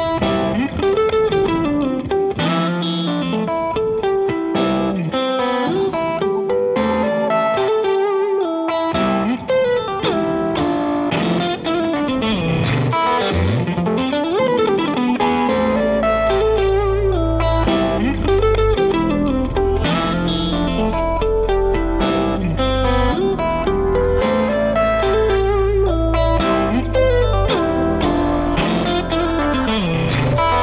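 Electric guitar playing a melodic lead with notes that bend and glide. Deep bass notes join about halfway through.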